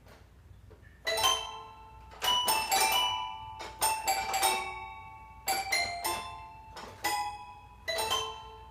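Toy piano playing a slow chordal introduction, starting about a second in: struck, bell-like notes and chords ringing out and dying away between groups.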